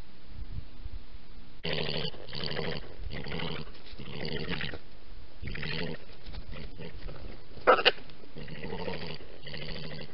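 European badger giving a rhythmic series of low, throaty purring calls, about one and a half a second, starting about two seconds in. There is a short, sharper and louder double burst near eight seconds.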